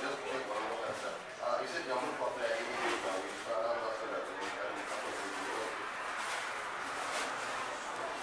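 A person's voice making speech-like sounds with no words the recogniser could pick out.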